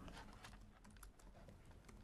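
Faint, irregular clicking of typing on a laptop keyboard.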